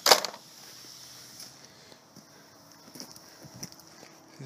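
Scrap circuit boards clattering briefly against each other in a plastic tub, a single short loud clatter right at the start, then a quiet stretch with faint scattered ticks.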